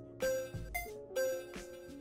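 A short melody sample from a producer's sample folder being previewed in a music program: pitched notes with sharp starts, the phrase beginning again about once a second.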